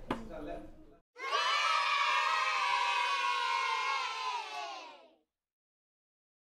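A group of children cheering together in one long shout, starting about a second in, with pitch slowly falling, fading out near the end.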